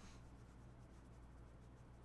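Near silence: room tone with a steady low electrical hum, and one faint brief rustle right at the start.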